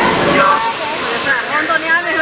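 Simulated flash-flood downpour in a theme-park special-effects canyon: water pouring and spraying heavily across the set. People's voices rise over it from about half a second in.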